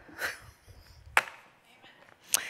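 Soft footsteps on a wooden stage floor, with one sharp knock a little past the middle.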